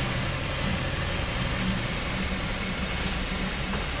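Steady mechanical noise, a low hum under an even hiss, from running equipment during a coolant flush.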